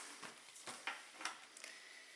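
Faint handling noise: a few light clicks and taps as a phone in a folio case and a charging cable are picked up and handled, with a faint steady high tone coming in past the middle.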